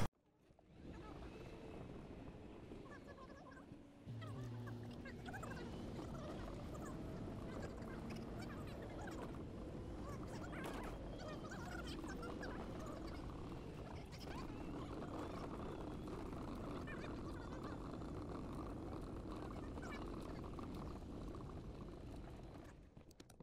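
Faint outdoor ambience with scattered bird calls over a low steady hum. It begins after a moment of silence and gets slightly louder about four seconds in.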